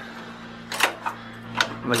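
A small horizontal-shaft gasoline engine's recoil starter being pulled by hand on an unfuelled display engine, turning it over with sharp clacks: one just under a second in, then two more close together near the end. A steady low hum runs underneath.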